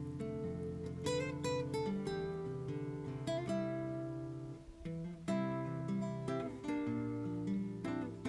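Background music: acoustic guitar playing plucked notes and strummed chords, with a brief pause about four and a half seconds in.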